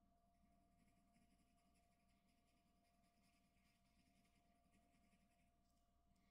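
Graphite pencil scratching faintly on drawing paper in many short shading strokes, stopping shortly before the end.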